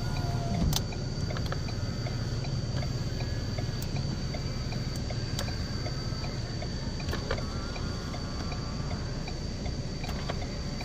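Power-folding side mirror motor of a Ford Ranger Wildtrak whining faintly and stopping with a click under a second in, then whining again briefly about seven seconds in. A steady low hum from the idling 3.2 diesel engine runs underneath.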